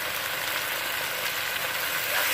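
Onions and tomatoes sizzling steadily in hot oil in a kadai.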